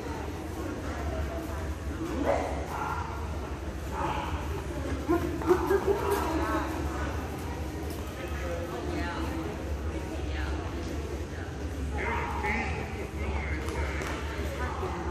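A dog barking a few times, about five to six seconds in, over indistinct talking and a steady low hum in a large hall.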